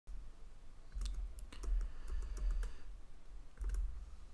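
Computer keyboard keys clicking at a desk: a quick run of clicks from about a second in to nearly three seconds, then a few more near the end, each with a low rumble beneath.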